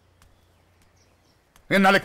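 Near silence with a few faint bird chirps, then a man's voice starts loudly near the end.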